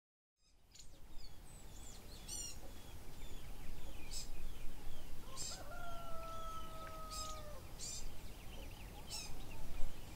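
Birds chirping and trilling, with one long rooster crow about two seconds long in the middle, over a steady low background rumble.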